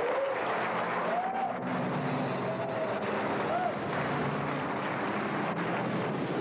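Theatre audience cheering and applauding, with shouts rising and falling through the noise. Music comes in underneath about two seconds in.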